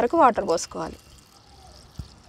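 Water poured from a mug into a plastic bowl onto chopped beetroot: a faint, steady splashing trickle that starts about halfway through, after a woman's voice.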